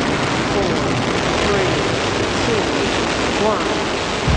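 Steady roar of a rocket launch from a sampled launch broadcast, with a voice faintly audible beneath it.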